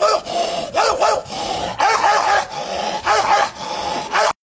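Dog-like barking: short pitched barks in pairs, four pairs about a second apart, over a steady tone.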